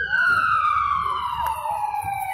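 A siren wailing, its pitch falling slowly across the two seconds.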